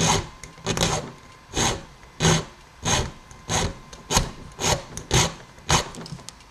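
Hand file rasping across a key blank sitting in the lock plug, about ten short strokes at roughly two a second, cutting the first pin position deeper until that pin sits flush.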